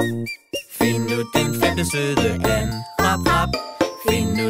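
Children's song music: short, separated notes over a bass line, then a fuller melody from about a second in.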